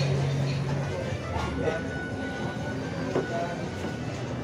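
A steady low electric motor hum that cuts off about a second in, followed by faint voices and background noise.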